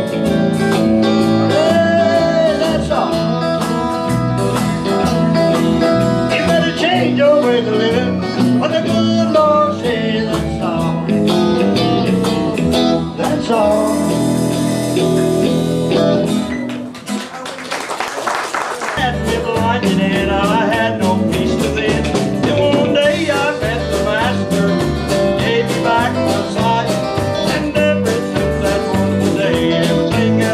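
Live country-blues song played on acoustic and electric guitars over a steady bass line, with bent notes on the lead. About halfway through, the music gives way briefly to a noisy wash before it resumes.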